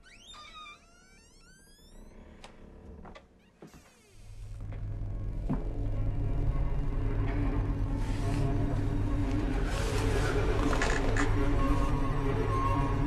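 Suspense music from a horror film score: eerie sliding tones at first, a few sharp knocks, then a low drone that swells up from about four seconds in and stays loud.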